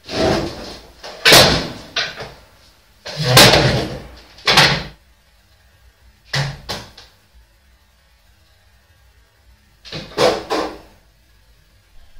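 Loud, irregular bangs and crashes of household furniture and doors being knocked about and slammed. They come in clusters: several in the first five seconds, two about six and a half seconds in, and a last burst about ten seconds in.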